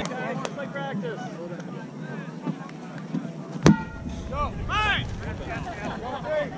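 A rubber kickball kicked once, a single sharp thump with a short ringing ping about three and a half seconds in. Distant voices call out on the field around it.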